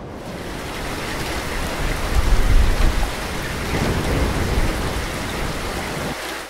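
Heavy rain with a low rumble of thunder, loudest about two seconds in.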